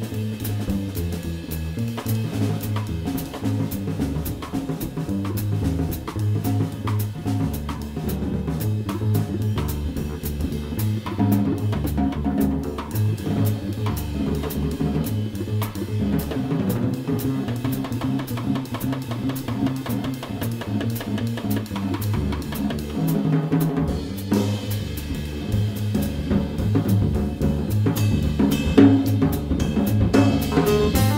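Jazz trio of double bass, drum kit and piano playing, with the bass moving from note to note under busy drumming on cymbals, snare and bass drum.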